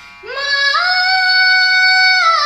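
A girl singing solo: about a quarter second in her voice slides up into one long, steady high note, sung over a faint instrumental drone.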